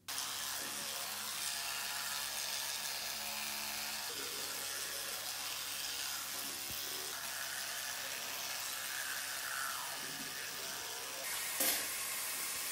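Electric toothbrush running in the mouth during brushing: a steady motor hum under a scrubbing noise, starting suddenly, with a brief louder noise near the end.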